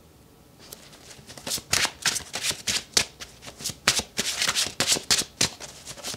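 A deck of tarot cards being shuffled by hand: a quick series of crisp card slaps, several a second, starting about half a second in.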